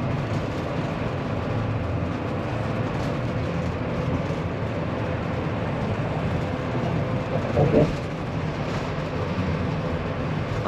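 Steady road and engine noise inside a motorhome's cab cruising at highway speed, with a short pitched sound about three quarters of the way through.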